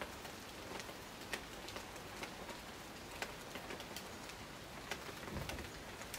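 Steady rain falling in a tropical rainforest: a continuous hiss, with individual drops ticking irregularly several times a second.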